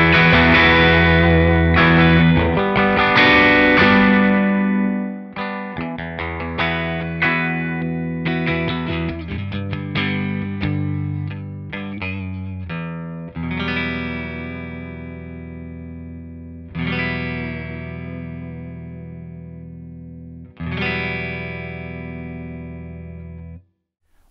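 Electric guitar played through a Hamstead Ascent boost pedal into a Hamstead Artist 60 amp set at 60 watts: loud strummed chords for the first few seconds, then picked notes and chords. It ends with three chords left to ring out, and the sound cuts off just before the end.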